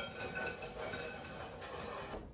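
Cooked French fries sliding out of a tilted air fryer basket onto a plate, a steady rustling with no sharp knocks.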